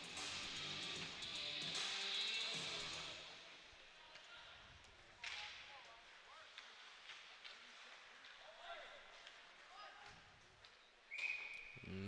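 Faint ice-rink sounds during play: a background haze that fades out over the first few seconds, one sharp knock about five seconds in, then a referee's whistle, one short steady blast near the end, stopping play for icing.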